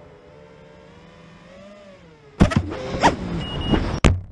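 FPV quadcopter's motors whining faintly and steadily, the pitch bending up and back down, then about two and a half seconds in the drone crashes: a sudden loud impact followed by clattering and a surging motor whine as it tumbles through the grass.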